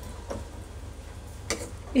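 A steel ladle clinks once against the metal kadai about one and a half seconds in, over a low steady hum.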